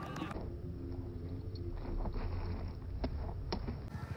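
Faint open-air ambience with a low rumble and a few faint steady tones, and two soft clicks a little after three seconds in.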